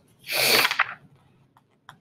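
A short breathy burst of air from a woman, about half a second long, followed by a few faint clicks near the end.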